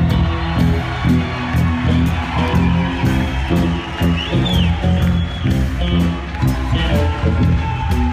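A live rock band playing loud: a prominent bass guitar riff over drums, picked up by a phone's microphone at the edge of the stage.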